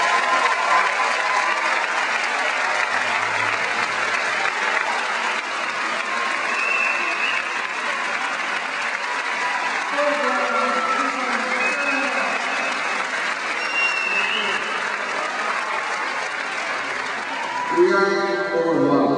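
Large audience applauding steadily, with scattered voices in the crowd; the clapping thins near the end as a man starts speaking.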